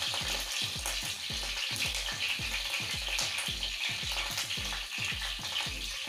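Green chillies, curry leaves and sliced garlic and ginger sizzling steadily in hot oil in a nonstick frying pan.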